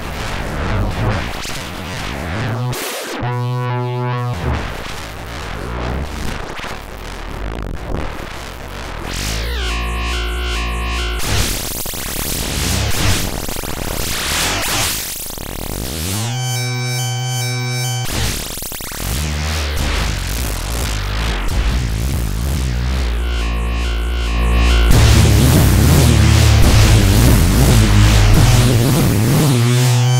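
TestBedSynth software synthesizer sounding a dense, noisy electronic tone whose timbre sweeps in a cycle about every six or seven seconds, as an envelope controller modulates a group of its parameters through the external input. It gets louder about 25 seconds in.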